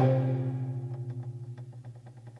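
Korean traditional music at the opening of a yulchang (sung classical poem) piece: a low plucked string note sounds at the start, then rings on and slowly fades.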